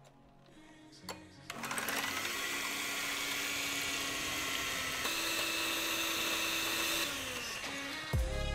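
Electric hand mixer whirring steadily as its twin wire beaters whip egg whites into foam in a glass bowl. It starts about a second and a half in and drops away about a second before the end.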